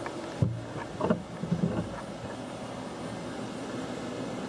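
Handling noise from a handheld camera being twisted and moved: two knocks about half a second and a second in and some rubbing, then a steady hiss of room and equipment noise.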